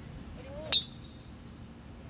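A single sharp metallic clink of a golf club head knocking against a golf ball, with a brief ring after it, about a second in. A faint short rising tone comes just before it.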